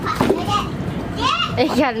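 A young child's high voice: short sounds early on, then a long, high-pitched wavering call in the second half.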